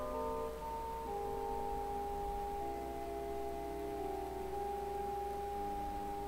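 Keyboard or organ playing the introduction to a hymn: slow, sustained chords, each held for a second or more before changing to the next.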